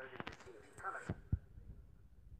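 Crackly radio-transmission audio of the 1969 moon landing broadcast played through a tablet speaker: a few clicks and a brief voice fragment, cutting off about a second in. A single low thump follows.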